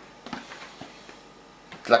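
Faint light clicks and taps of an empty 5-litre plastic water bottle being handled, its thin plastic knocking softly. A man's voice starts speaking near the end.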